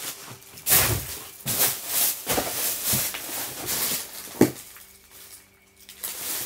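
Rummaging through clutter by hand: a series of brief rustling, scraping handling noises, with one sharp click about four and a half seconds in.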